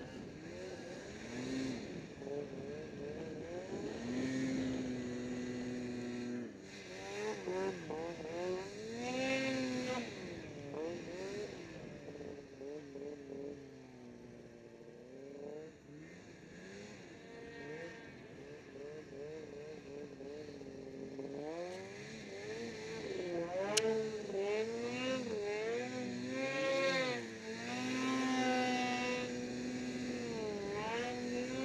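Snowmobile engine revving up and down again and again as the throttle is worked through deep powder, quieter and steadier for a stretch in the middle. A single sharp click comes about two-thirds of the way through.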